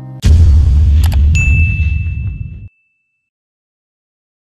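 Sound effects for a subscribe-button animation: a sudden low boom that carries on as a heavy low sound for about two seconds, two quick mouse clicks about a second in, then a single high bell ding that rings out. The sound cuts off abruptly near three seconds.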